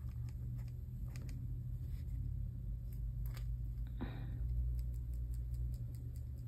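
Fingers working acrylic paint on paper and a paper palette: a few faint clicks and a brief scrape about four seconds in, over a low steady hum.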